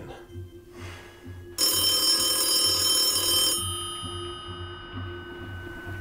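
A vintage telephone's bell rings once, starting about a second and a half in and lasting about two seconds, then stops with a short ringing fade. Under it runs quiet background music with a low pulsing beat.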